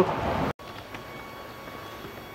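Steady background noise that cuts off abruptly about half a second in. It gives way to quieter background with a faint steady hum; no distinct event is heard.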